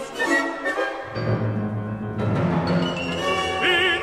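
Symphony orchestra playing a short interlude between sung phrases, with a low sustained rumble coming in about a second in. A baritone voice re-enters near the end.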